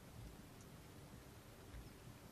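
Near silence: the faint hiss and low rumble of an outdoor field recording, in a gap between bird calls.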